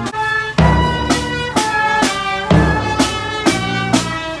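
Music from a band: sustained melody notes over a heavy bass drum beat landing roughly every two seconds, with lighter drum hits between.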